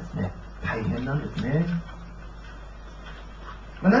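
A man's voice through a microphone making a few short, wordless sounds whose pitch glides up and down for about a second. Only a low steady hum follows.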